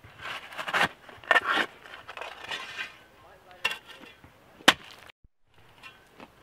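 Metal shovel scraping and scooping into dry, gravelly soil in three quick strokes, followed by two sharp knocks. The sound cuts out briefly near the end.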